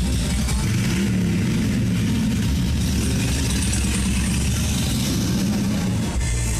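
KMG Afterburner pendulum ride running, a steady loud low mechanical rumble that swells slowly in pitch, with a rushing hiss above it.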